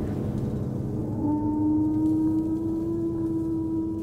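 Dark sound-design drone: a low steady hum, joined about a second in by a long held tone with a fainter overtone above it.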